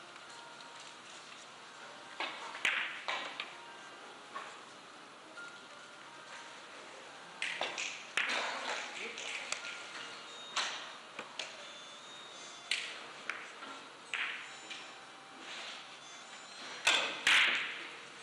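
Hard ivory-like clicks of carom billiard balls striking each other, coming singly and in short runs at scattered moments in a hall. Near the end comes the loudest cluster: a cue strike and a quick run of ball-on-ball collisions.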